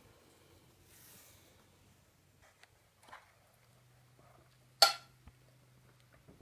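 A fork on a bowl as a bite is taken: a few faint taps, then one sharp clink about five seconds in.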